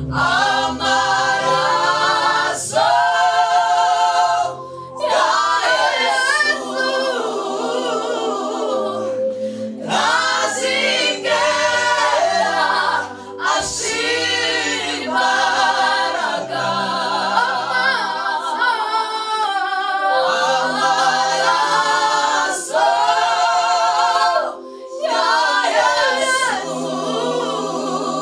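A small mixed vocal group of women and one man singing a gospel song a cappella in harmony through microphones, in long phrases with brief breaths between them.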